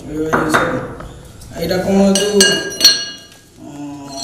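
Hard clinks of stone implements and a metal tool knocking against stone: one about half a second in, then three close together past the middle, each with a brief high ring.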